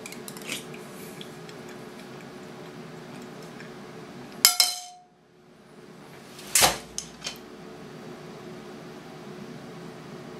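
A metal spoon drops into a cereal bowl with a sharp clatter and a brief ring, after a few light clinks of spoon on bowl. About two seconds later comes a heavy thud as a head falls face-first onto the bowl of cereal and milk on the desk, followed by a small knock.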